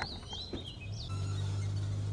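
Birds chirping in short rising-and-falling calls, with a couple of sharp clicks. About a second in, a steady low hum sets in and grows louder.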